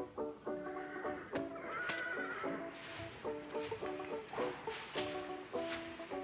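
Background music of short, clipped notes, with a horse whinnying briefly about two seconds in.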